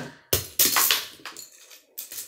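Beyblade spinning tops clashing and skittering on a bare wooden table: a sudden loud clatter that fades over about a second, then a single sharp click near the end.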